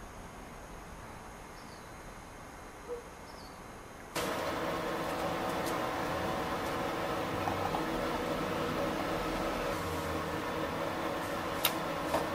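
Faint room tone, then, about four seconds in, a louder steady machine hum sets in abruptly and runs on, with a sharp click or two near the end.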